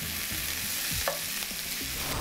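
Lamb pieces sizzling steadily as they sear in hot oil in a frying pan, with light taps of metal tongs as the pieces are turned over.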